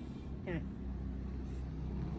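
A steady low rumble, with a short falling vocal sound from a woman about half a second in.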